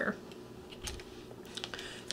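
A few faint light clicks and taps from makeup brushes and a palette being handled, with one soft low bump a little before the middle.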